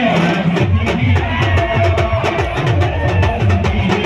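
Amplified live band music through large speaker stacks: a steady, fast drum beat with a keyboard melody over it.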